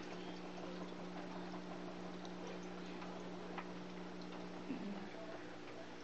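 Aquarium filter running: a steady low hum over a faint hiss, with a couple of faint ticks.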